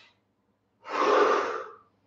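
A man's loud, forceful breath, about a second long, starting about a second in. It is one repetition of the Strelnikova 'pump' breathing exercise, a sharp nasal inhale during a small bend with the breath let out through the mouth.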